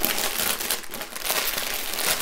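Small plastic bags of diamond painting drills crinkling continuously as a bundle of them is handled and shuffled in the hands.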